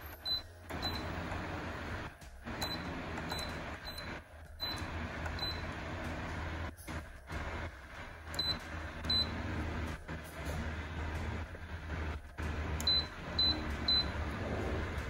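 Short high electronic beeps from a Mistral 16-inch DC stand fan's touch control panel, about a dozen, one for each button press as the settings are changed and the speed is stepped down, over the steady hum of the fan running.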